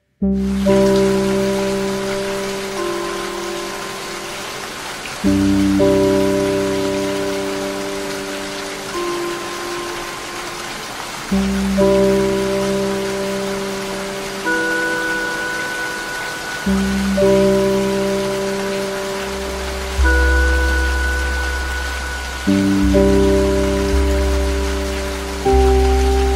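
Slow ambient music of long held chords with a deep bass, changing about every five to six seconds, over a steady hiss of falling rain.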